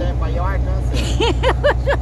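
Volvo NH 380 truck's diesel engine droning steadily while driving, heard from inside the cab, with a voice talking over it, strongest in the second half.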